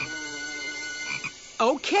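Cartoon night-time jungle ambience: frogs croaking in a steady drone, with faint high insect tones and a short chirp about once a second. It is the stock sound of a stunned silence.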